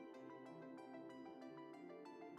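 Faint instrumental background music: a steady run of short melodic notes.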